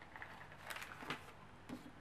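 Faint small clicks and rustles of objects being handled, over quiet room tone.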